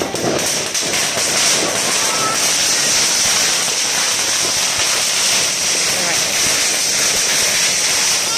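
Firecracker strings crackling continuously in a dense, steady din, with children's voices heard over it.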